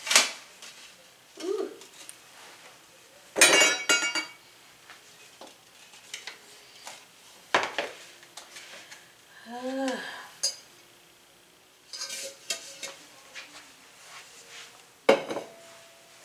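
Metal tube cake pan and plate clanking as a baked pound cake is flipped out of the pan and the pan is lifted off and set down: several separate clanks with a ringing tail, the loudest about three and a half seconds in.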